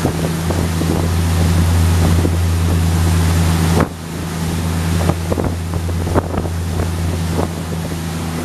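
The single diesel engine of a 34-foot Luhrs sportfishing boat running under way, a steady low drone over water and wind noise. About four seconds in the drone drops suddenly in level and then carries on, with a few sharp knocks after that.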